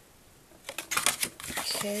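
Paper card and cardboard gift box being handled: a run of crisp rustles and clicks starting about half a second in, followed by a short spoken "okay" near the end.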